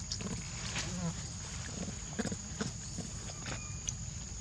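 Macaques feeding on fruit: a scatter of short clicks and smacks from chewing and handling fruit, with a few brief chirping calls, over a steady high-pitched insect drone.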